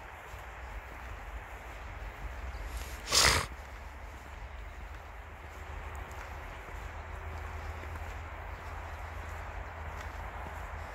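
Steady outdoor background noise with a low rumble, broken once about three seconds in by a short, loud, rushing burst of noise.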